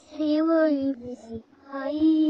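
A child singing in a high voice without clear words: one long held note, a few short notes, then another long note rising in near the end.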